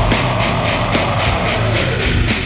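Experimental death metal music: heavily distorted electric guitars over dense, fast drumming.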